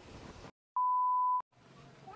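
A single steady electronic beep, one pure tone of about 1 kHz, starting a little under a second in and lasting about two-thirds of a second.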